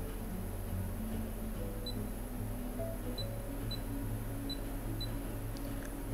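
Short, high electronic beeps from the touch buttons of a MAST Touch tattoo power supply, five of them spread over the second half, each confirming a button press. Background music plays throughout.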